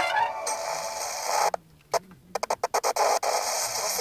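Sound from a TV set receiving a weak, distant analog broadcast: music under static hiss, cutting out suddenly about one and a half seconds in. A run of sharp clicks and crackles follows as the set changes to another station, and then steady hiss.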